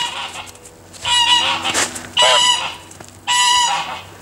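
Domestic goose honking three times, loud calls about a second apart, each lasting about half a second.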